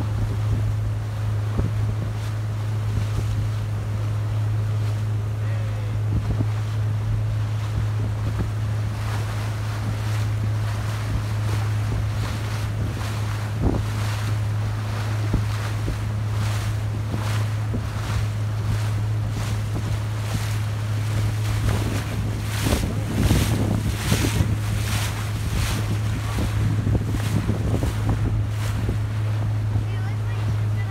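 A boat's motor drones steadily while the boat is under way towing a rider, with the rush of the wake and wind buffeting the microphone. The wind gusts come harder and more often in the second half.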